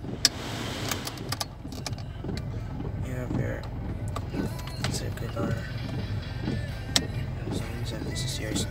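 Plastic clicks of a car's dashboard climate-control knobs and stereo buttons being turned and pressed, a few sharp clicks spread through, over a steady low hum inside the cabin.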